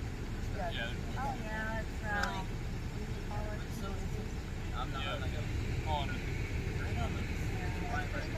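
Indistinct voices of people talking at a distance, in short scattered phrases, over a steady low rumble.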